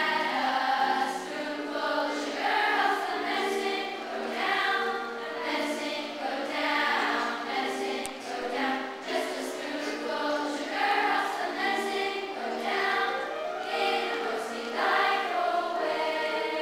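School choir of children singing a song together in parts, led by a conductor.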